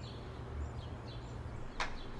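Outdoor garden ambience: small birds chirping in short falling notes over a low steady rumble, with one sharp click near the end.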